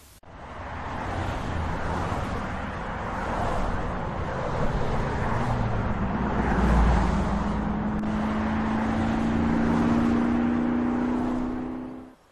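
A motor vehicle running, with engine and road noise; the engine note rises slightly in pitch over the last few seconds, then the sound cuts off abruptly.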